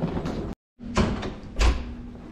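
A door knocking shut: two thuds about two-thirds of a second apart, the second the louder, just after the sound drops out briefly to dead silence. A steady low hum runs underneath.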